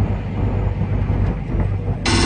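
Truck engine and road noise heard inside a moving truck's cab: a steady low drone.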